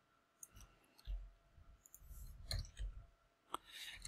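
Faint, scattered clicks of a computer mouse and keyboard, a handful spread over a few seconds, with a few soft low thumps among them.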